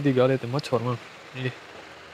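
A man's voice speaking briefly in the first second and again for a moment near the middle, over a steady faint buzzing hum.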